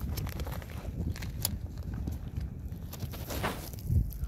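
Tools being picked up off snowy ground: scattered clicks, clinks and crunching steps, with a loud knock at the very end. Wind rumbles on the microphone throughout.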